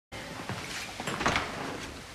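A room door being opened: a few light clicks, then a louder clack of the handle and latch a little over a second in.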